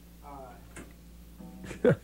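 Guitar sounds among a few spoken words as the band gets set at its instruments, with two loud, very short sounds that swoop downward in pitch near the end. Heard off an FM radio broadcast taped to cassette.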